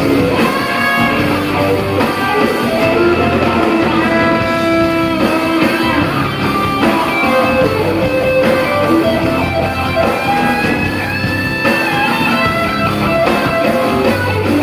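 Live rock band with an electric guitar playing a lead line of long held notes that slide between pitches over the band's backing.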